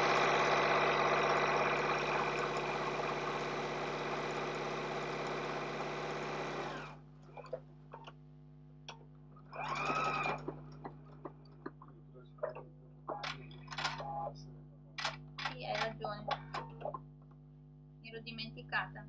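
Electric sewing machine stitching a seam at steady speed for about seven seconds, then stopping. About ten seconds in there is a brief second run that rises and falls in pitch, followed by scattered light clicks from handling the fabric and machine.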